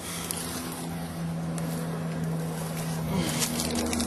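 A steady engine hum from a distant motor, with its pitch shifting slightly about three seconds in, over wind noise on the microphone.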